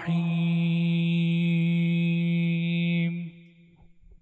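A man's voice reciting the Qur'an in melodic chanted style, holding one long, steady note for about three seconds before it stops, followed by faint breath sounds.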